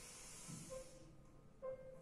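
Very faint: a soft hissing exhale through the mouth during about the first second, then near silence with a faint thin tone.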